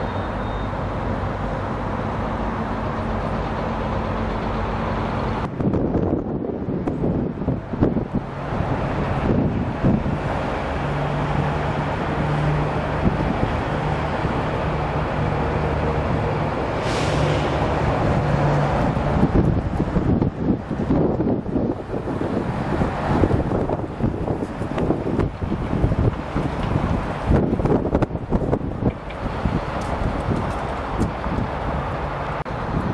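A vehicle engine running at idle with a steady low hum; from about five seconds in, gusty wind buffets the microphone and largely covers it.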